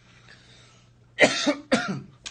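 A man coughs twice in quick succession, loud and harsh, a little past halfway through.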